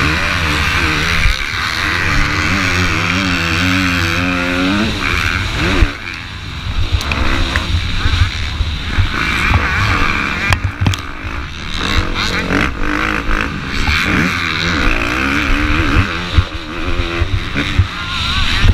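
Motocross bike engine at race speed, revs rising and falling repeatedly as the rider throttles and shifts, over a heavy rushing noise from riding.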